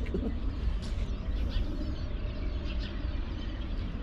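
Outdoor ambience: a steady low rumble with a few faint bird chirps.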